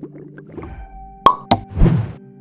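Cartoon-style plop sound effects on an animated outro wipe: two sharp pops about a quarter second apart in the second half, then a short, louder splashy burst, over soft background music.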